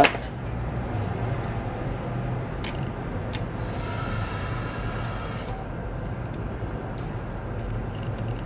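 Light clicks and taps of a plastic handheld electric air pump and its rubber hose being handled, over a steady low background hum. A faint buzz lasts about two seconds in the middle.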